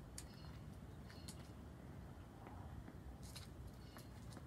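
Near silence: faint outdoor background with a steady low rumble and a few faint short ticks.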